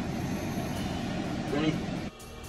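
Steady low rumble of a car heard from inside its cabin, with a short voice sound about one and a half seconds in.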